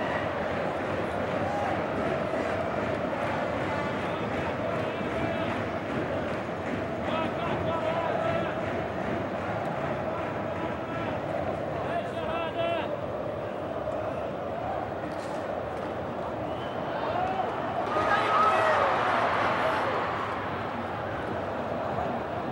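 Large football stadium crowd singing and chanting as one dense mass of voices, swelling louder about eighteen seconds in.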